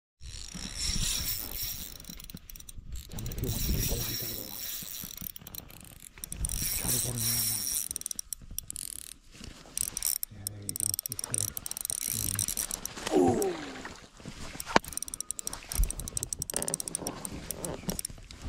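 Spinning reel being cranked to retrieve a spoon, its gears and bail whirring with fine rapid clicking, in uneven spells that stop and start.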